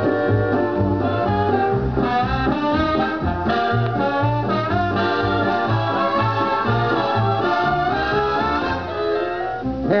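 Instrumental break of a band playing an old-time show tune over a steady bass line, played back from an LP record, with no singing until the vocal comes back in at the very end.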